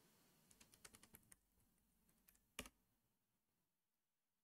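Faint computer keyboard typing as a password is entered: a quick run of about eight light keystrokes in the first second and a half, then one louder single keystroke about two and a half seconds in.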